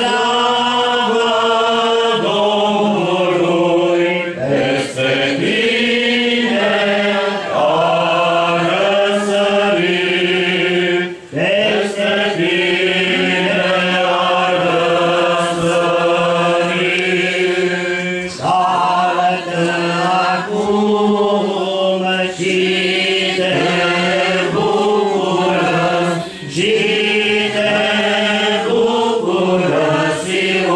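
Orthodox liturgical chant for the Easter service: voices sing a slow hymn in long held phrases, with brief pauses for breath between them. A steady low note is held under the moving melody.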